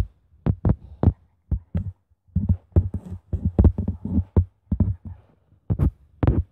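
Irregular soft thuds and taps, two or three a second: fingers tapping on a tablet's touchscreen while drawing, picked up by the device's own microphone.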